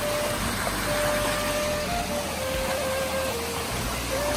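Steady rush of a small waterfall. A thin melody of a few long held notes, stepping up and down, runs over it.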